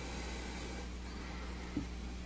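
Quiet room tone: a steady low electrical hum and faint hiss, with a faint thin high tone briefly around the middle. The toy boat floating still in the water makes no audible sound.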